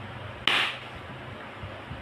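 A single short puff of breath, a quick exhale, about half a second in, over quiet room tone.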